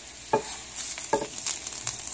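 Pierogies and onions sizzling in a frying pan while a wooden spoon stirs them, with a few knocks of the spoon against the pan.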